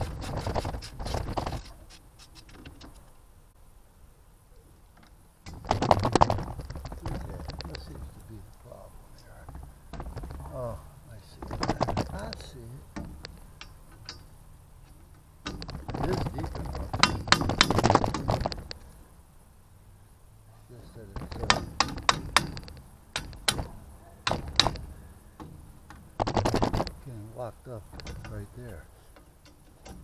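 Hand tools working on metal antenna hardware: bursts of clicking, clinking and scraping, about six bursts with quieter stretches between them.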